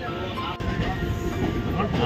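Running noise of a moving passenger train heard from inside the coach: a steady low rumble that grows louder about half a second in, with passengers' voices over it.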